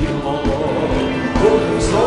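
Church worship music: a man singing a hymn into a microphone over a band with a steady beat.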